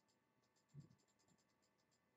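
Near silence: faint room tone with a scatter of faint, irregular high ticks and one soft low thump a little under a second in.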